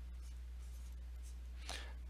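Steady low electrical hum on the lecture recording, with faint scratching and tapping of a stylus on a pen tablet as a symbol is drawn on the screen. A short intake of breath comes near the end.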